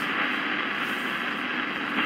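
CB radio receiver hissing with static on an open channel between transmissions: steady band noise with no voice on it.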